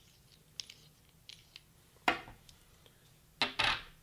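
Small anodized aluminium stand parts being handled and set down on a hard tabletop: a few light metallic clicks, then a sharper knock about two seconds in. A brief, louder noise follows near the end.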